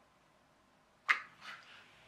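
Near silence, broken about a second in by a short, sharp handling noise and a fainter one just after: hands setting a small ESC and its wires into a plastic toy RC car.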